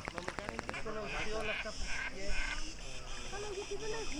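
Indistinct voices in the background, with a rapid run of clicking pulses in the first second.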